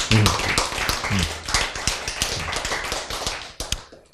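A small audience clapping, a quick irregular patter of hand claps that thins out and stops shortly before the end. A man's brief "응" sounds over it near the start.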